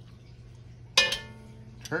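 Metal kitchen tongs give one sharp clink against the cookware about a second in, ringing briefly, while turkey giblets are lifted from the simmering pot. A low steady hum runs underneath.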